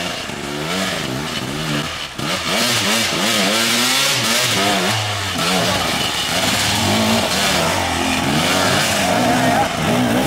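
Enduro motorcycle engines, more than one, revving in short repeated bursts with the pitch rising and falling as the bikes work over rocks; louder from about two seconds in.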